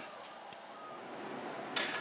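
A quiet pause in a man's talk: faint, even room hiss. A short burst of noise comes near the end, just before he speaks again.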